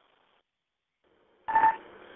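Dispatch two-way radio: faint static that cuts out, then a short beep over a burst of static about one and a half seconds in as a transmission is keyed.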